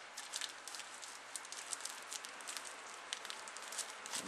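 A small black sack being handled and opened: faint, irregular rustling with many small crackling clicks.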